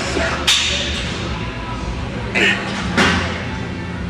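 Two sharp, breathy bursts about two and a half seconds apart, over a steady low hum: forceful exhalations of a lifter straining through heavy seated dumbbell presses.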